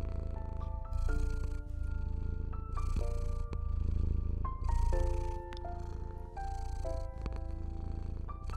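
A cat purring: a low, steady rumble that swells and eases with each breath every second or two. Soft, slow piano music plays over it, with held notes and chords.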